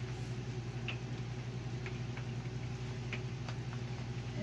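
A steady low hum with a few faint, scattered clicks and ticks.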